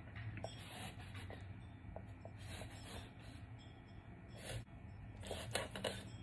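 Kitchen knife scoring a whole raw tilapia on a plastic cutting board: faint scraping strokes and light taps, scattered through, over a low steady hum.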